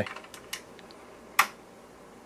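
Front-panel paddle toggle switches of an IMSAI 8080 being flipped by hand: a couple of light clicks, then one sharper click about a second and a half in.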